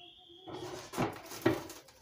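Handling noises at a kitchen counter: a brief high squeak, then rustling with two dull knocks about one and one and a half seconds in.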